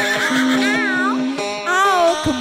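Live dangdut band music: a steady held keyboard chord, with a voice twice calling out in a wavering, wobbling pitch.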